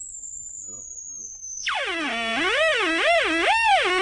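A mock police siren: a thin, high whistle sliding slowly downward, then, a little under two seconds in, a louder wailing tone that rises and falls about once a second.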